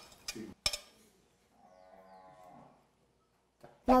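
A few sharp knocks and scrapes as strips of raw pork loin are pushed off a cutting board into a plastic bowl, followed about halfway through by a faint, drawn-out pitched sound lasting about a second.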